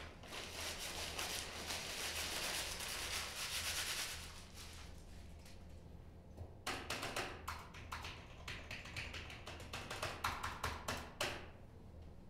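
Paper being handled and wrapped, a rustling noise for about the first four seconds. Then a computer keyboard typed on, a quick run of clicks from about six and a half seconds to eleven.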